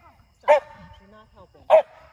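A dog barking twice, single sharp barks a little over a second apart.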